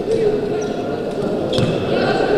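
A wheelchair basketball game echoing in a sports hall: indistinct players' voices calling out over the play, with one sharp knock about one and a half seconds in.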